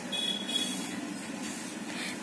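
Steady low background hum with a faint high-pitched tone lasting about half a second near the start.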